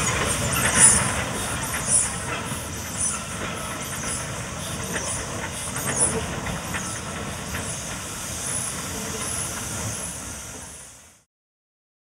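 Narrow-gauge forest steam train running past, with steam hissing over a steady rumble. The sound fades out shortly before the end.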